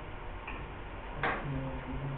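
A faint tick, then a single sharp click a little over a second in, over steady background hiss. A low steady hum follows the click.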